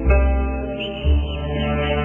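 Slow instrumental Chinese music: a guzheng note is plucked at the start over held low tones, and a new low note enters about a second in.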